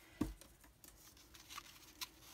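Faint handling of a ribbon spool: a soft knock about a quarter second in, then light scratches and clicks as fingers turn the spool looking for the loose end of the ribbon.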